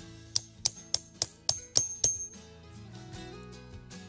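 A knife blade tapped into the end of a wooden stick to split it: seven quick, sharp taps with a metallic ring in the first two seconds, over quiet background guitar music.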